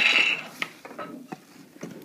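A packaging tray slides out of a clear plastic box with a short, loud scraping rub right at the start. Light clicks and taps of handling follow.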